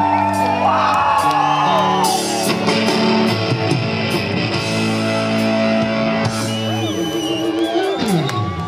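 Live Southern rock band playing loud electric guitars over bass and drums, with bending lead-guitar lines in the first couple of seconds and chords changing about once a second. The audience adds whoops and shouts over the band.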